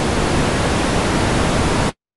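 Steady, loud hiss of band noise from an SDRplay RSPduo receiver tuned in FM on the 10-metre amateur band, with no signal on the channel. The hiss cuts off abruptly to silence just before the end.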